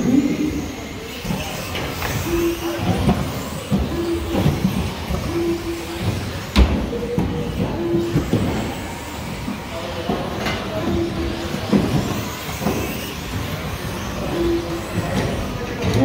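Electric 2WD RC racing buggies running on an indoor carpet track: motor and tyre noise in a reverberant hall. Short steady beeps sound now and then, and there is a single sharp knock about six and a half seconds in.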